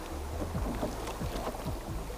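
Rushing whitewater churning and splashing against a canoe's hull as it runs through a small stream rapid, with background music underneath.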